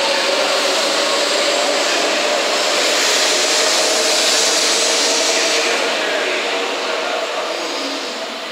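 500 Series Shinkansen train accelerating away from the platform: a steady whine over a dense rush of wheel and air noise, loudest about midway and fading as the last cars go by near the end.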